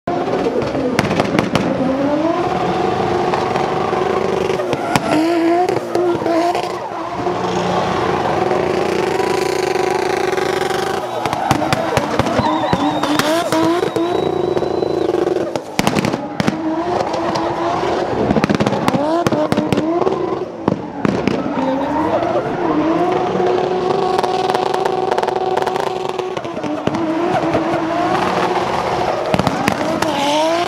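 Turbocharged Toyota 1JZ straight-six in a BMW E36 drift car, revving hard through drifts. Its pitch climbs again and again and then holds flat for seconds at a time at high revs, with sharp crackles and pops from the exhaust throughout.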